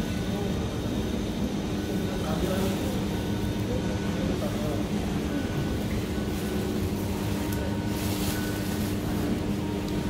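Supermarket background: a steady hum with faint voices in the distance, and a short rustle about eight seconds in.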